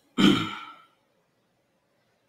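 A man's loud sigh close to the microphone: one breath out, lasting under a second and fading away.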